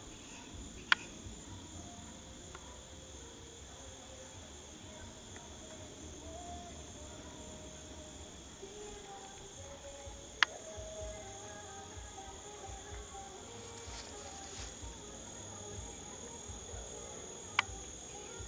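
A steady, high-pitched insect chorus drones without a break. Three sharp clicks cut through it: about a second in, about halfway, and near the end.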